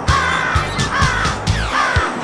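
Crows cawing, several short falling caws in a row, over music with a steady thumping beat.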